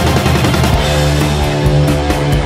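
Instrumental passage of a heavy metal song, with distorted guitars and drums. A little under a second in, the dense playing gives way to held, ringing notes over a steady low note.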